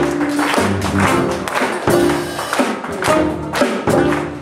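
Live jazz band playing an instrumental passage: alto saxophone over keyboard, electric bass and drums, with a steady beat.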